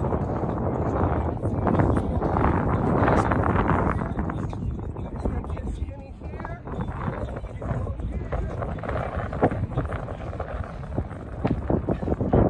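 Wind buffeting the microphone, strongest in the first few seconds, with footsteps of children running on artificial turf.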